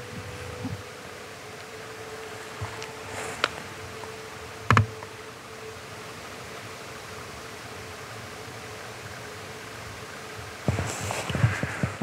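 Quiet steady hiss of an outdoor night recording on a handheld camera, with a faint steady whine for the first few seconds and a few brief knocks. Rustling handling noise comes in near the end as the camera swings down into long grass.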